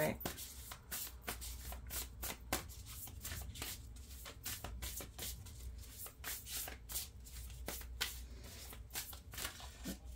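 A deck of oracle cards being shuffled by hand: a continuous, irregular run of quick soft snaps and rubs, several a second, over a low steady hum.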